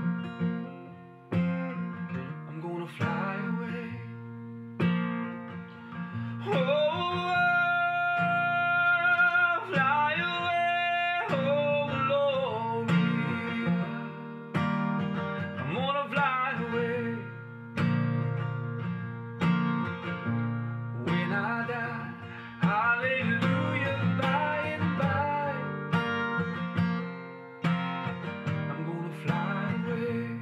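Steel-string acoustic guitar strummed in a steady rhythm, with a man's voice singing long held notes of the melody over it, strongest in the middle stretch.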